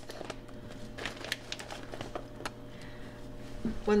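Scattered soft clicks and crinkles of a plastic package being handled, with a wooden spoon pushing gnocchi from it into a pot of soup.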